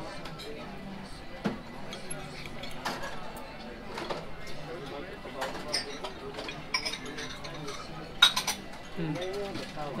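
Metal knife and fork clinking against a china dinner plate while steak is cut and eaten: scattered sharp clinks, with a quick, loud cluster about eight seconds in. Diners chatter in the background.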